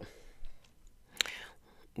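A pause in a woman's talk: a soft breath, then a single short, sharp mouth click a little past a second in.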